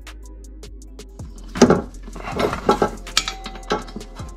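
Metal clinks and rattles of a socket wrench and extension being worked on the crossmember bolts, several short bursts from about one and a half seconds in, over steady background music.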